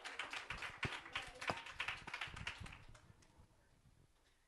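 A congregation clapping: a patter of hand claps that dies away over about three seconds.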